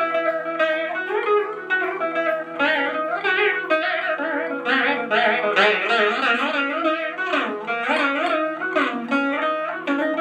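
Veena played solo in Carnatic style: plucked melody notes that slide and bend in pitch, over the steady ring of the drone strings, as in a tanam.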